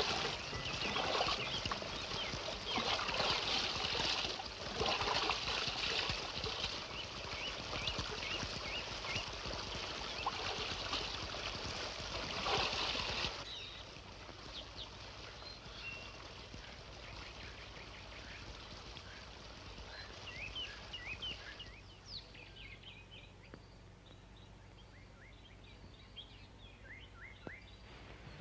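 Splashing and sloshing in a shallow pool of spring water as a man plunges his head in to drink, in uneven surges for about the first thirteen seconds. It cuts off suddenly, and after that small birds chirp in short, scattered calls.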